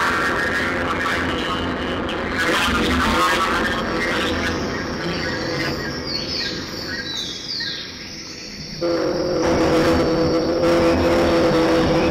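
Layered experimental soundtrack of noise and steady droning tones. It thins and dips in the middle, then jumps back louder, with two steady tones, a little before nine seconds in.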